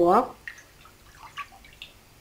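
Faint water splashes and drips as basmati rice is stirred in a glass bowl of rinsing water with a silicone spatula and a hand, after a short spoken word at the start.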